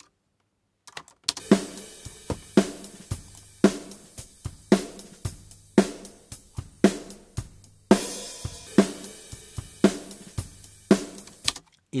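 Recorded drum kit playing a steady groove, starting about a second in, with a hard snare hit about once a second between lighter kick and hi-hat strokes and a cymbal crash near the eight-second mark. It is played back through a saturation plugin that clips the snare's transients.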